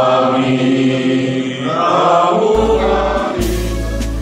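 A group of voices singing a song together in long held notes. About two and a half seconds in, a music track with a deep steady bass comes in over the singing, and the sound turns brighter about a second later.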